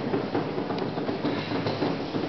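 Steady hubbub of a large echoing hall: indistinct distant voices and room noise, with a few small knocks and no clear single sound.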